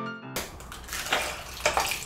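Background piano music that cuts off about a third of a second in, then melted blue ice-pop slush splashing into a plastic tub, with a few sharp clicks.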